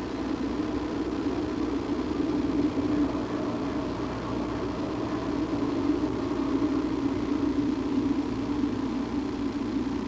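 A steady low mechanical drone, like an engine running, with no breaks or sharp sounds.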